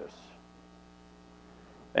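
Faint, steady electrical mains hum with a stack of evenly spaced overtones.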